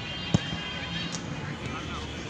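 Outdoor background of distant voices and chatter, with one sharp knock about a third of a second in.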